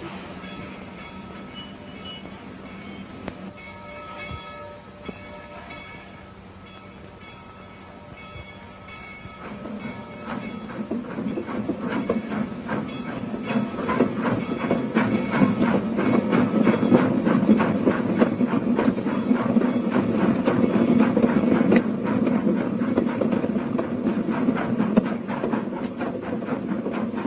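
A train getting under way: after a quieter stretch, its noise grows louder from about ten seconds in, with a fast, even clatter of wheels on the rails.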